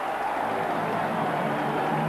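Steady crowd noise from the stands of a football stadium, an even murmur with no surge or distinct calls.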